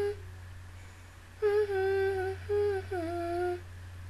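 A woman humming a few held notes of a tune, with small bends in pitch, from about a second and a half in until near the end, over a steady low background hum.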